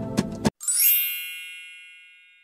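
Background music with plucked notes cuts off abruptly about half a second in. A bright chime sound effect follows, sweeping quickly upward into high ringing tones that fade out slowly.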